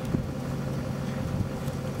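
A steady, low engine hum, as of a vehicle idling, with light wind on the microphone. No shot is fired.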